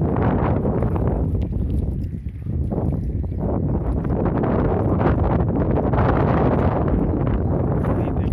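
Wind buffeting the microphone with a steady low rumble, and footsteps sinking into soft wet mud on a tidal flat.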